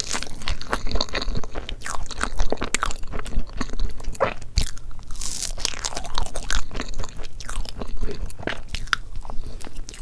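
Close-miked eating of soft layered crepe cake with cream: chewing and biting with a dense, steady run of small mouth clicks.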